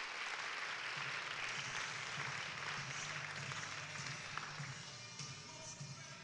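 An audience applauding, thinning out after about five seconds, with background music playing underneath.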